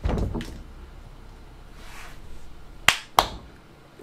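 Two sharp hand claps in quick succession, about a third of a second apart, near the end, after a dull low thump at the start.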